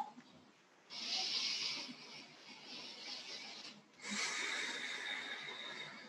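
A woman taking two long, deep breaths through the nose, close to the microphone: one begins about a second in, the next about four seconds in. The second breath has a faint whistle in it.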